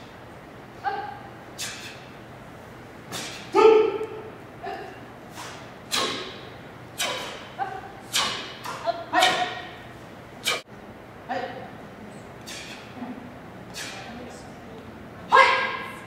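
Taekwon-Do students' short, sharp kiai shouts, about one a second, mixed with the thuds and snaps of kicks and strikes in a step-sparring drill. One sharp crack about ten and a half seconds in.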